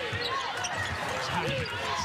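Basketball being dribbled on a hardwood court, with sneakers squeaking on the floor in short squeals that rise and fall in pitch, several times over the two seconds.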